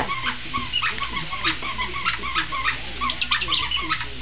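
Plush squeaky dog toy squeaked over and over in quick, irregular squeaks, about three a second, during rough play with a Pomeranian.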